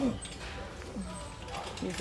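Metal shopping cart rattling as it is pushed over a tiled store floor.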